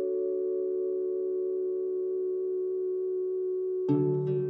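Background music: a held chord of clear, pure electronic tones sustained steadily, with plucked notes coming in right at the end.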